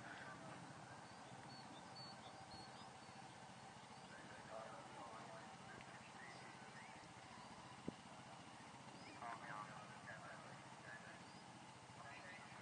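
Near silence: faint open-air ambience with a few faint high chirps and one sharp click about eight seconds in.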